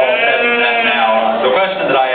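A sheep bleating: one long call about a second long that rises and falls in pitch.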